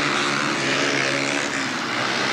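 Speedway motorcycles, 500cc single-cylinder methanol-burning engines, racing flat out around a bend, their engines blending into one steady, loud drone.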